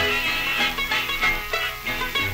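Jug band music played from an old 78 rpm record: an instrumental stretch of plucked string notes picked in quick succession, with no singing.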